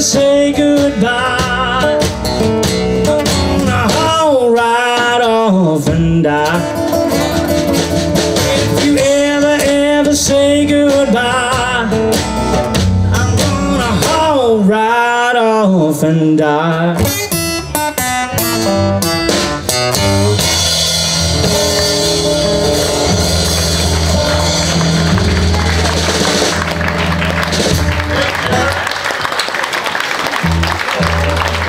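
Live blues trio of acoustic guitar, upright bass and drum kit playing the end of a slow blues. A wavering lead line with bent notes carries the first twenty seconds or so, then drops out while the band holds the final chords under a wash of cymbals.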